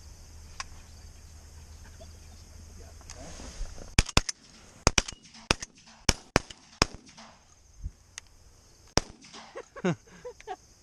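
Shotguns firing at pigeons in a rapid, uneven volley: about a dozen blasts in five seconds, some only a split second apart, from more than one gun. A brief rustle comes just before the first shot.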